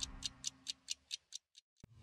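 Clock-like ticking sound effect of a TV programme ident, about four ticks a second, fading away as the last of the music dies out. A single sharp click comes near the end.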